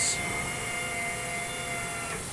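Induction heat shrink machine running with a steady hum and a few high, even whining tones.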